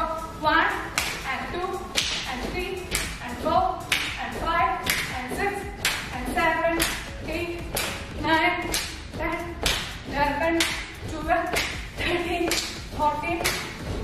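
Hand claps keeping a steady beat of about two a second during a set of jumping jacks, with a voice calling out between them.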